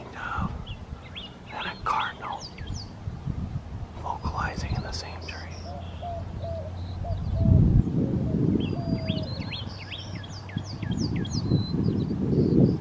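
Male northern cardinal singing runs of sharp down-slurred whistles, with a white-winged dove cooing a series of low notes through the middle. Low rumbling bursts come twice in the second half.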